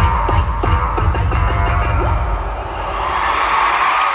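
Live pop concert music heard from the audience in an arena: the band plays with a steady drum beat that drops out about two seconds in, leaving a sustained wash of sound that swells near the end.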